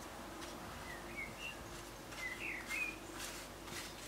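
Faint rustling and soft pats of hands pressing thin phyllo pastry sheets into a baking dish. A few short, high chirps sound in the background about a second in and again past the middle.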